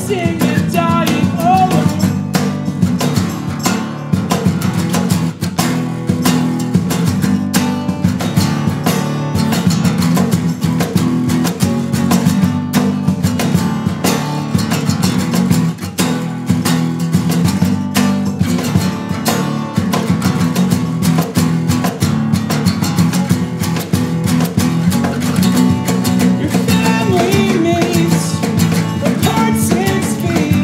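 Two acoustic guitars playing an instrumental passage of an acoustic punk song: one strummed hard and fast in a steady rhythm, with low notes from the other underneath.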